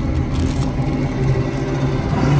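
Film soundtrack played loud over cinema speakers: a heavy, steady low rumble of sound effects.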